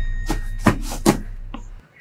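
A quick run of four short knocks in the first second, over a low drone that fades out near the end.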